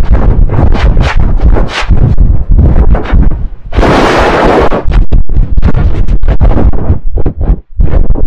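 Heavily distorted, very loud edited audio: choppy, stuttering bursts with heavy bass, broken by a burst of loud hiss about four seconds in.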